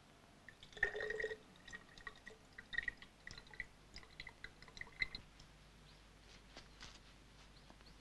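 Water ladled into a bamboo tube: a short pour about a second in, then a few seconds of faint drips and plinks as the last drops fall in.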